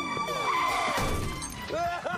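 Film soundtrack mix: music and voices, with a sharp crash-like hit about a second in and falling pitch sweeps.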